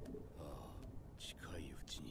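Faint, hushed speech: a character's subtitled line from the anime episode, heard quietly in the background.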